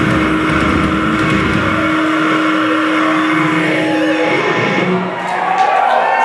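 Live heavy metal band's distorted electric guitars holding a ringing, sustained chord at the end of a song. The drums and low end drop out about two seconds in, the held note cuts off a little after four seconds, and crowd noise rises near the end.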